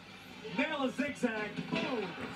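Quiet speech with music underneath.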